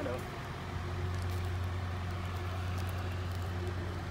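A steady low motor hum.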